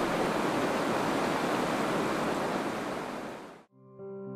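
Rain falling, a steady even hiss that fades away about three and a half seconds in. Soft music starts right after.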